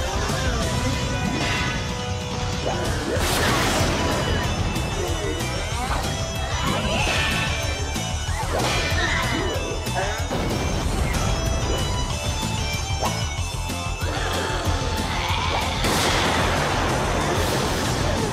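Action-scene soundtrack: music under a string of fight sound effects, repeated crashes and hits with sweeping glides in pitch, for a giant robot battling a monster.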